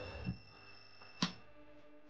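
A continuity tester's faint steady beep tone, showing that the two-way switch is closing the circuit between live and switch live. A single switch click comes about a second in, and the tone fades away after it.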